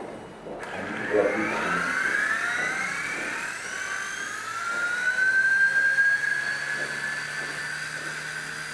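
Micro RC helicopter (V922) spooling up on a tabletop: the electric motor and rotor whine starts about half a second in, rises slowly in pitch over several seconds, then holds steady.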